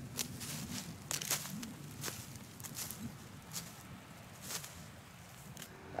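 Footsteps through dry corn stalk residue: faint, irregular crunches and crackles of the stalks and husks underfoot, a few every second.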